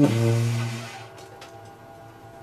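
Tenor saxophone ending the improvisation on one low held note that fades out after about a second, followed by a few faint clicks.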